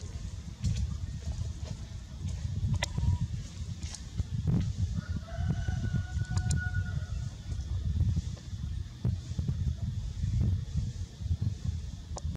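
A rooster crowing faintly in one drawn-out call about five seconds in, over a steady, uneven low rumble like wind on the microphone, with a few light clicks.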